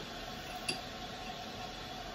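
A metal spoon clinks once, short and sharp, against a container about two-thirds of a second in, over a faint steady hum.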